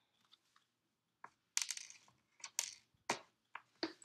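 Handling noises at a sewing machine as a sewn garment is worked at the machine: a run of sharp clicks and crinkling rustles, starting about a second in.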